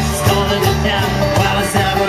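Live band playing a pop-rock song: strummed guitar over a pulsing bass line with a steady beat.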